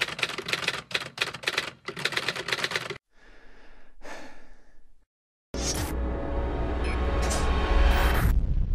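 Rapid, irregular typewriter-like clicking for about three seconds, then a faint hiss, a brief break, and a steady sound with strong bass starting about five and a half seconds in.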